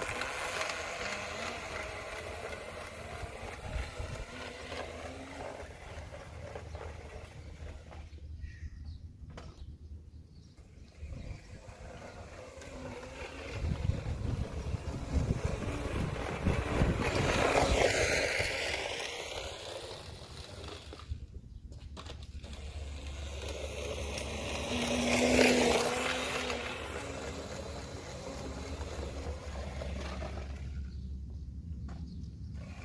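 Razor E90 electric scooter running on the road, its small chain-driven motor, drivetrain and wheels on tarmac, on about 12 volts. It grows louder and fades twice as it passes close by, once near the middle and again about three quarters of the way through.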